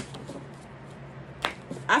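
Tarot cards being handled and shuffled: a sharp snap of cards at the start and another about one and a half seconds in, with a quiet stretch between.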